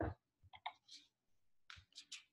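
A quiet pause holding a few short, faint clicks, around half a second in and again near the end, after the tail of a spoken word at the very start.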